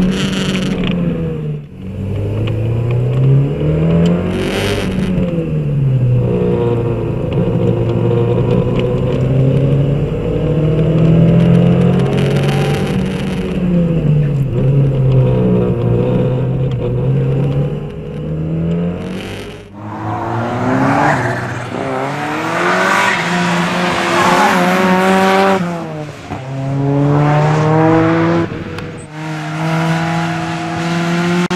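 Ford Sierra RS Cosworth's turbocharged four-cylinder driven hard on a circuit, heard from inside the cabin: the engine note climbs through the gears and drops again under braking, over and over, with short hissing bursts now and then. About twenty seconds in the sound changes to the car heard from outside, still revving up and down at speed.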